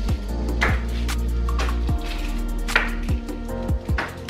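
Background music with a steady beat: deep bass drum hits that drop in pitch, sharp drum strikes and sustained low bass notes.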